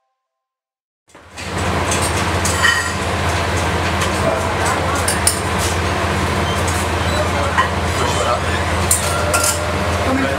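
Busy commercial kitchen starting about a second in: plates and utensils clinking against each other as food is plated, over a steady low hum.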